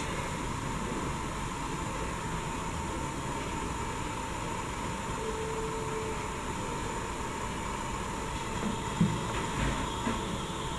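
Steady background hiss of room noise, with no guitar playing yet. A faint short tone about five seconds in and a soft knock near the end.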